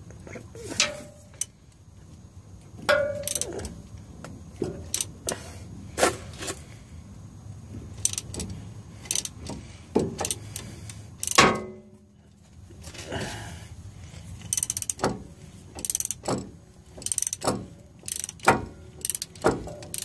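Gear puller's forcing screw being cranked with a wrench to press the pinion yoke off a rear differential: irregular metallic clicks, with one louder sharp crack about halfway through and quicker clicking near the end.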